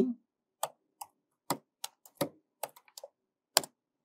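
Keystrokes on a computer keyboard as a sentence is typed: about ten separate, light key clicks at an uneven pace.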